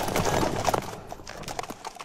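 Galloping horse hoofbeats clattering, a quick run of sharp strikes that thins out and fades toward the end.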